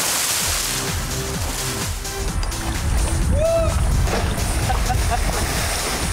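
Background music over river water splashing and sloshing around a wader, the splashing strongest in the first second. A man shouts "Woo!" about halfway through.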